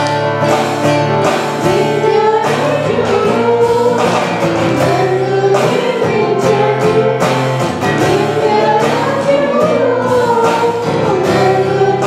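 A group of adult and child voices, men's, women's and boys', singing a Telugu Christian worship song together over instrumental accompaniment with a steady beat.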